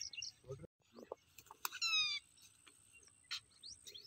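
A bird's high call about two seconds in, falling in pitch with several overtones. A sharp click follows about a second later.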